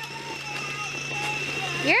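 Electric motor of a child's battery-powered ride-on scooter running: a steady low hum with a high, even whine on top that cuts off near the end.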